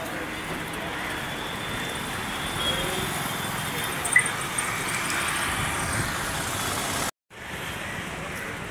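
Road traffic noise: a steady hum of passing cars, with a short sharp high-pitched blip about four seconds in. The sound cuts out for a moment near the end.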